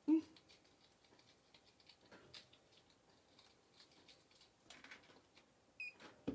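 Faint, scattered clicks and rustles of a necklace and its tagged packaging being handled by hand. A brief high tone sounds near the end.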